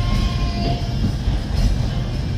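A train running on the Alishan Forest Railway's narrow-gauge track, with a steady low rumble of wheels on rails. A faint thin squeal sounds briefly in the first half second.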